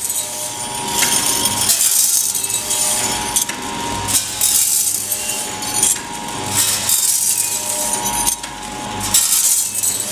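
Multi-lane automatic granule filling and packing machine running: a steady hum with a faint tone, broken every second or two by noisy rattling bursts from its working cycle.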